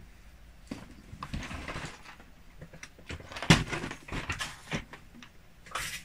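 Clear plastic storage bins being pulled out, slid and set down on a wooden table, with a run of knocks and clatters. A stretch of rustling comes in the first couple of seconds, and the loudest knock comes about three and a half seconds in.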